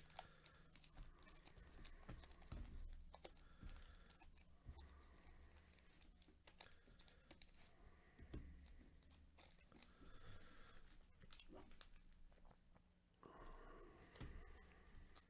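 Faint crinkling and tapping of foil trading-card pack wrappers being handled and counted off a stack, scattered small clicks over a low steady hum.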